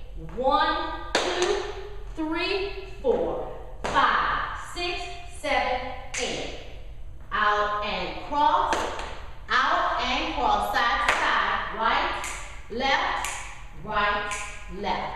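A woman's voice speaking in short phrases, with several sharp taps and thumps of shoes stepping and stomping on a hard studio floor.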